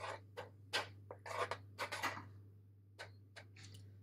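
A metal spoon stirring thick pumpkin puree in a stainless steel saucepan, clicking and scraping against the pot in irregular strokes, busiest in the first two seconds with a few more near the three-second mark.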